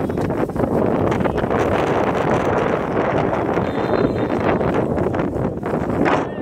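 Wind buffeting the microphone: a loud, steady rush of noise with irregular gusty flutter, heavy in the low end.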